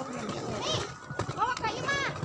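Voices of a small group: short exclamations and chatter, including a high arching "oh" about a second and a half in.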